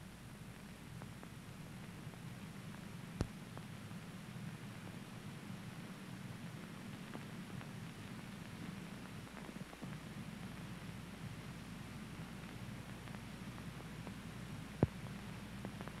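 Faint steady hum and hiss of an old film soundtrack with no live game sound, broken by two single clicks, one about three seconds in and one near the end.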